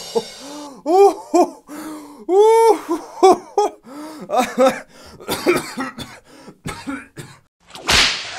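A man's fit of laughing and coughing: a run of short, loud bursts of voice broken by gasps.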